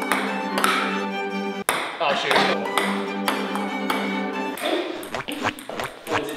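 Background music over a ping-pong rally, with a ping-pong ball clicking several times off paddles and table.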